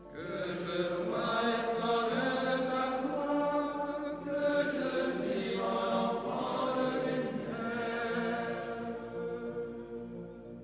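Recorded vocal music, a slow sung chant, at the opening of a prayer recording. It comes in abruptly at the start and eases off near the end.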